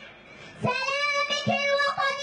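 A young girl singing into a microphone in long held, wavering notes, coming back in after a short pause about half a second in.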